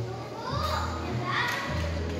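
Background music with steady low bass notes, and a child's high voice calling out twice over it, about half a second and about a second and a half in.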